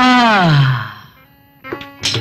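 A man's drawn-out vocal call, rising a little and then falling in pitch as it fades within the first second. Near the end, dance music starts with sharp plucked notes and drum strokes.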